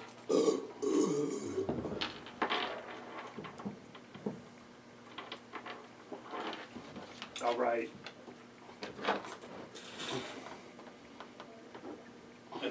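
A man belching, one low belch about a second long near the start, while men chug beer from 40-ounce glass bottles. Shorter, fainter belch- or grunt-like sounds follow later on.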